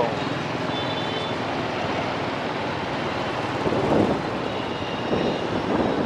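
Steady traffic noise on a busy city street thick with motorbikes and scooters, heard on the move along the road.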